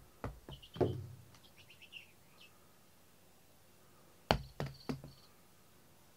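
Sharp knocks as a small toy ball is thrown in and bounces across the floor, with a light high rattle as it rolls to a stop. About four seconds in, three quick knocks follow.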